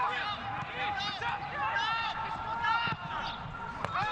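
Footballers' voices shouting and calling to one another across the pitch, with no crowd noise. There are two sharp thuds of the ball being kicked, about three seconds in and near the end.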